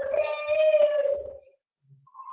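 A domestic cat giving one long, drawn-out meow that fades out about a second and a half in, heard over video-call audio.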